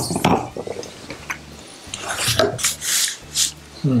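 Whisky tasting at the table: a glass knocks on the wooden tabletop at the start, then a taster draws air through the mouth over the whisky in several short breathy bursts, ending in an appreciative 'mm'.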